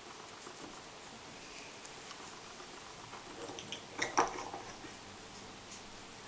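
Coloured pencil faintly scratching on a colouring-book page, then a short cluster of clicks and rustling about four seconds in, the loudest sound here, as the pencil and book are handled.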